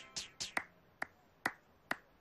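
A series of sharp cartoon tapping sound effects, the later ones evenly spaced about two a second, each with a brief ring.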